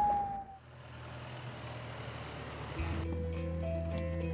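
A single falling tone, the tail of a siren, fades out about half a second in, leaving the quiet, steady noise of a moving ambulance heard from inside the cab. About three seconds in, background music with plucked guitar notes comes in.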